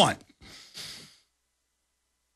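A man's last word trails off, then a faint breath into a studio microphone in two short parts, then dead silence for the last second or so.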